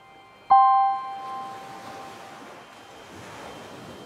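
A single bell-like chime struck about half a second in, ringing out and dying away over a second or so. It is followed by a soft wash of noise that swells and fades.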